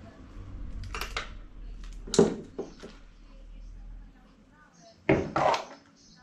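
Metal hand tools clinking and knocking against the RC truck's small steering parts and the wooden table: a sharp click about a second in, a louder clack about two seconds in, and two loud knocks close together near the end as the pliers are set down. A low steady hum sits underneath and fades out a little past the middle.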